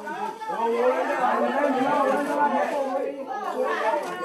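Several voices talking over one another in a steady stream of overlapping chatter, slightly louder than the single-voice speech around it, from a projected film's soundtrack.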